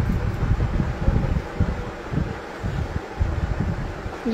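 Uneven low rumbling and buffeting on a phone microphone, in irregular gusts, with cotton cloth being handled and rustled.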